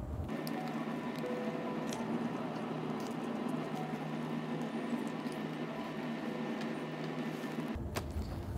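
A sheet of origami paper being folded and creased by hand, with faint crinkles and rubs over a steady background hum.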